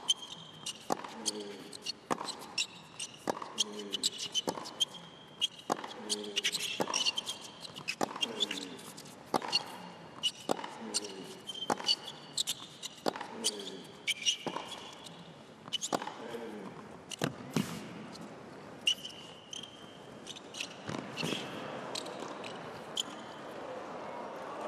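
Long tennis rally on an indoor hard court: racket strikes on the ball about once a second, with a player's grunt on roughly every other shot and sneaker squeaks between strokes. Crowd noise swells near the end as the rally goes on.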